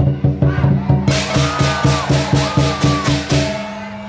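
Lion dance percussion band playing a fast, even run of drum beats with bright cymbal crashes, which stops abruptly shortly before the end.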